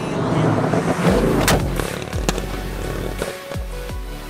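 Music with a deep bass line and low notes sliding down, over the 6.2-litre V8 of a C7 Corvette driving past the camera. The car's loud rush peaks and fades in the first second and a half.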